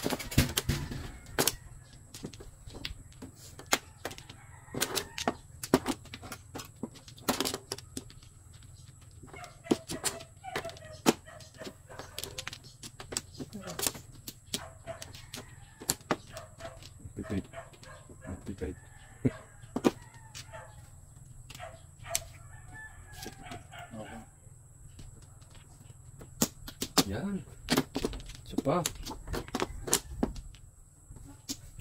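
Plastic mahjong tiles clacking as players draw, discard and set them on the table: many sharp, irregular clicks.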